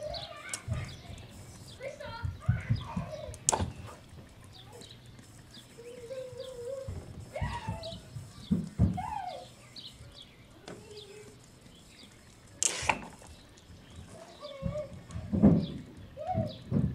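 Irregular low thumps and buzzing bass from a blown small computer speaker driving a homemade solenoid dancing-water speaker as it plays a song. Birds chirp throughout, and there are a few sharp clicks, the loudest about three and a half seconds in and again near the end.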